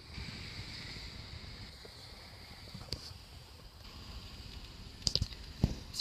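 Quiet car-cabin room tone: a steady low rumble and hiss, with a few faint clicks and knocks near the end.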